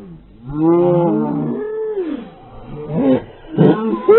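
A girl's voice: one long, wavering cry lasting about a second and a half, then a run of short vocal bursts near the end as she ends up on the grass.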